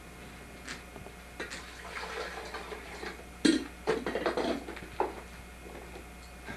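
Irregular knocks and clatters with some rattling, over a steady low hum. The loudest knock comes about three and a half seconds in.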